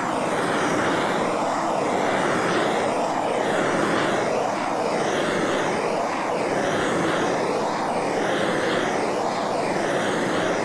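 Hand-held gas torch burning with a steady roar while it is swept back and forth a few inches over freshly poured epoxy to pop the surface bubbles. The sound swells and fades slightly about every second and a half as the flame sweeps.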